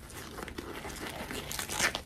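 Black disposable nitrile glove (Wostar, extra large) rustling and crinkling as it is pulled on over a hand and stretched into place, louder near the end.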